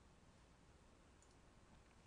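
Near silence: a faint steady hiss of room tone, with a couple of very faint clicks about a second in.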